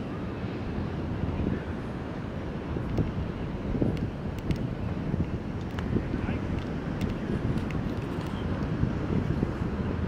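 Wind buffeting the camera microphone: a steady low rumble that swells in gusts, with a few faint clicks.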